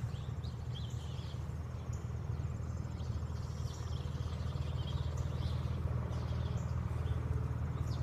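Outdoor yard ambience: a steady low hum with faint, scattered bird chirps and a faint high insect trill.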